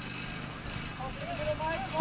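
Quiet open-air ambience of a football match under a steady low hum, with faint distant voices calling from about a second in.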